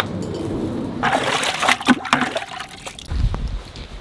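Dry alfalfa pellets poured from a scoop into a feed bowl, a short pattering pour about a second in. A low rumble follows near the end.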